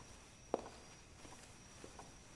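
A few faint, scattered soft knocks and clicks in a quiet room, one louder about half a second in and a fainter one near the end.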